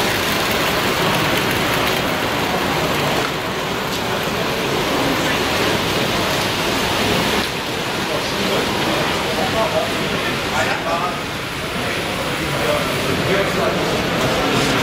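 Steady babble of many people talking at once, with no single voice standing out.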